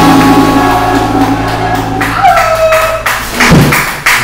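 Live trio of electric bass, acoustic guitar and drum kit playing: held notes ring on and fade through the first half, then the music thins to a few separate plucked guitar notes, with a single low thump about three and a half seconds in.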